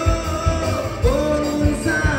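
Live band playing an upbeat Hokkien pop-rock song, with a male voice singing over a steady kick drum beat.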